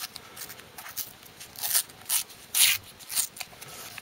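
Fingers picking at and rubbing the wrapper of a Topps Star Wars sticker packet while trying to open it: about four short, crisp rustles in the second half, the loudest a little past halfway.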